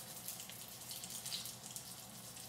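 Faint, steady sizzle of food frying in hot oil in a pan, with small crackles running through it.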